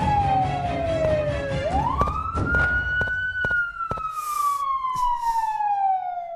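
Police siren wailing: a tone falls slowly, sweeps quickly back up about two seconds in, holds briefly, then falls slowly again. Background music with a beat plays under the first half.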